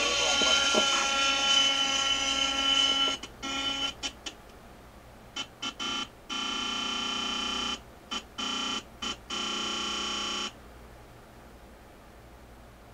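The glow-fuel two-stroke engine of an RC helicopter in flight, heard as a steady, many-toned drone through a TV speaker from old videotape. About three seconds in it breaks off, then cuts in and out in short pieces as the damaged tape plays. It stops with about a second and a half left, leaving faint hiss.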